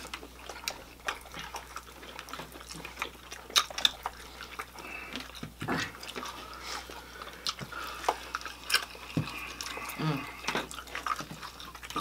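Close-miked eating sounds of people chewing fried chicken wings, with irregular smacks and scattered light clicks and clinks of plates and utensils.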